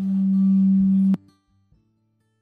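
Music with a loud, steady low tone held over it, both cut off abruptly with a click just over a second in.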